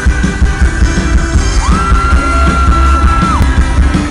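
Live rock band playing loudly through a festival PA, with heavy bass and drums and electric guitar. About a second and a half in, a long high held note rises, holds level for nearly two seconds and drops away.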